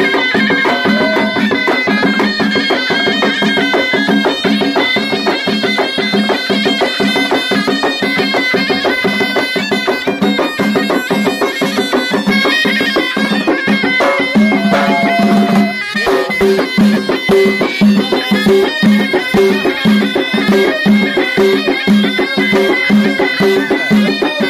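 A Moroccan ghaita ensemble of double-reed shawms plays a loud, nasal folk melody over hand-held drums. About two-thirds of the way through the music breaks off for a moment, then goes on with the drums beating a steady pulse of about two strokes a second.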